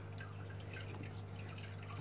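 Faint dripping water over a steady low hum from aquarium equipment.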